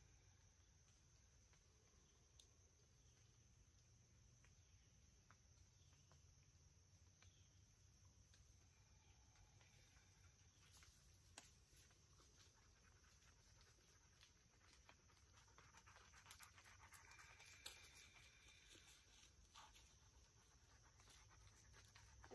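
Near silence: faint forest ambience with a steady high hiss, and faint rustling and ticking in the second half as a dog comes near through the leaf litter.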